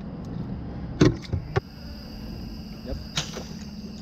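Three sharp knocks and clatters on the boat, the loudest about a second in, over a steady hum.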